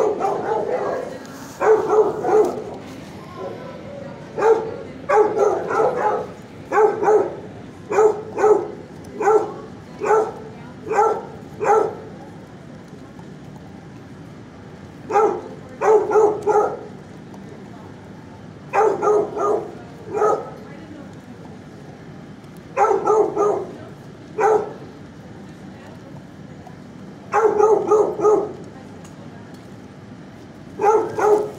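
A dog barking in repeated bursts of a few short barks, with pauses of a few seconds between bursts.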